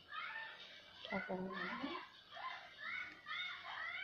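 An animal's short, high-pitched calls, each rising and falling, repeated about two or three times a second. A low human voice sounds briefly about a second in.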